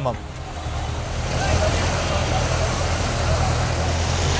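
Swollen river floodwater rushing steadily, a continuous wash of noise over a low rumble.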